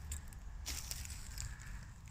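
Faint crackle of dry leaves and twigs on the forest floor underfoot, a couple of small snaps, over a low rumble of the handheld phone's microphone.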